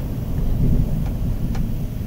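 Steady low rumble of a vehicle's engine and road noise heard inside the cab, with a couple of faint clicks.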